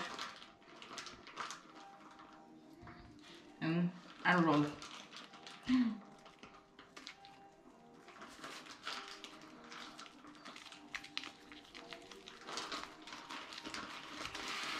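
Light clicks and rustles of hands pressing and rolling a nori-wrapped sushi roll on a wooden cutting board, with a couple of brief vocal sounds about four and six seconds in.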